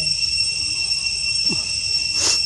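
Forest insects droning as a steady high-pitched chorus, several fixed tones held without a break, over a low rumble.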